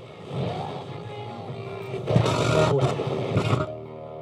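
Realistic portable AM/FM radio being tuned across the dial. The music cuts out to hiss between stations. About halfway through, snatches of other stations come and go, and near the end it drops back to a quieter hiss.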